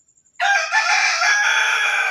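A rooster crowing: one loud crow lasting about a second and a half, starting about half a second in.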